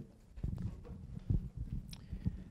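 Handheld microphone handling noise: a string of irregular dull knocks and thumps as the microphone is picked up and brought into position.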